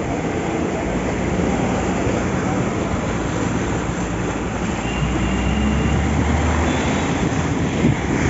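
Fast-flowing floodwater rushing over a road, a steady loud noise. A low rumble rises over it about five seconds in and fades before the end.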